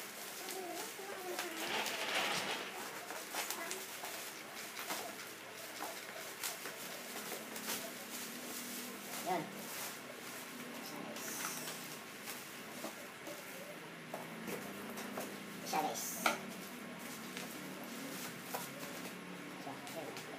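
Plastic wrapping rustling and crinkling as it is pulled off a cardboard box, with many small clicks and knocks of handling.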